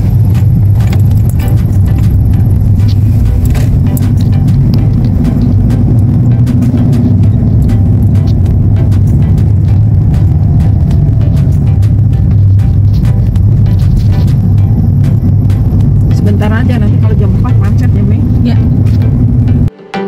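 Road and engine noise inside a moving car's cabin: a loud, steady low rumble with scattered clicks. It cuts off suddenly just before the end.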